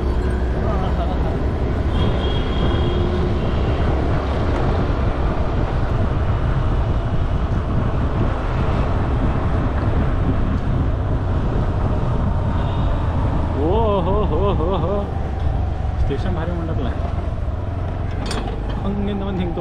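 Steady low rumble of wind and road noise from a moving vehicle in street traffic, with faint voices around it. About fourteen seconds in, a brief wavering pitched sound rises above the noise.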